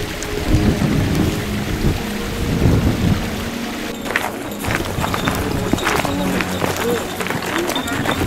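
Gusty wind buffeting the camera microphone, an uneven low rumble. Background music sounds under the first half and fades about halfway, leaving outdoor ambience with faint voices and small clicks.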